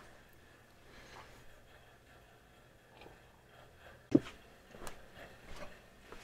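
Quiet handling noise, then a sharp knock about four seconds in and two lighter knocks after it: an aluminium soft-plastic bait mold and its spring clamp being unclamped and set down on the workbench after injection.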